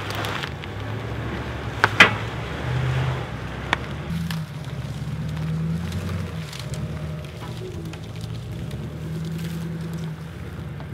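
Pickup truck engine running under load, its pitch stepping up and down, as a stuck Ram pickup is pulled out on a tow strap. A few sharp cracks of snapping dry brush about two seconds in, and another near four seconds.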